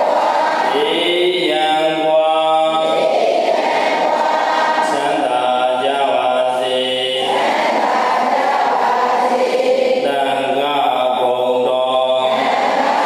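Buddhist devotional chanting: voices holding long, steady notes in phrases a few seconds long, one after another without a break.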